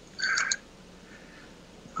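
A man's short breathy vocal sound, under half a second long, ending in a small click, followed by quiet room tone.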